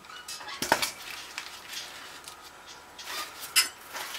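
Ears of fresh corn in the husk being handled, with rustling husks and a few sharp clicks, the loudest about a second in and near the end.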